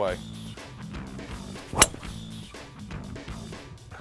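Golf driver striking a teed ball: a single sharp crack a little under two seconds in.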